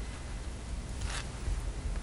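Quiet room hum with one short rustling scrape about a second in.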